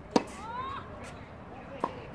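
Tennis racket striking the ball on a forehand, a sharp crack just after the start. A fainter ball impact follows from the far end of the court near the end, as the rally goes on.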